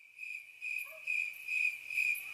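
A woman whistling one long, high note through pursed lips that wavers a little in loudness.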